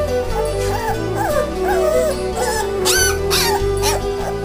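Three-week-old black Labrador puppies crying in short squeaks that rise and fall in pitch, several in a row, with one louder, higher squeal a little past three seconds in. Background music with steady held notes plays throughout.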